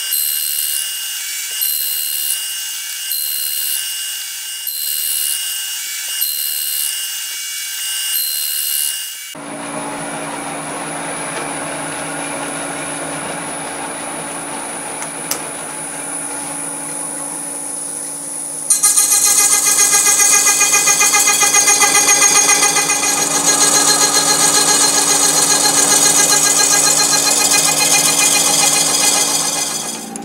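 Milling machine running a slitting saw that cuts notches into the rim of a thin encoder disc under coolant, with a high-pitched cutting sound that repeats about once a second. About nine seconds in it changes to a steadier, quieter machine hum with a thin high whine. About halfway through it jumps louder into a steady run with several pitched tones.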